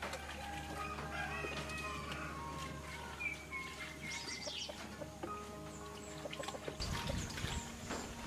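Chickens clucking and a rooster crowing over soft background music with sustained notes. Near the end, water sloshes as hands wash sliced sweet potatoes in a steel basin.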